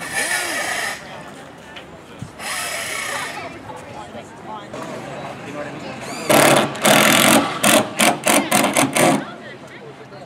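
Power drill running in bursts: a short run near the start and another about two and a half seconds in, then a longer, louder run about six seconds in, followed by a quick string of short pulses.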